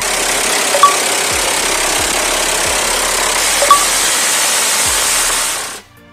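Black Hawk helicopter in flight, its rotor and turbine noise loud and steady as heard from inside the open-doored cabin. The noise cuts off suddenly near the end.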